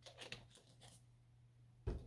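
Mostly near silence, with a few faint small clicks and rustles in the first second and a single short, sharp thud or knock just before the end.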